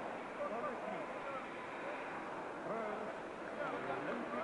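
Indistinct voices, several overlapping, over a steady hiss, with no clear words.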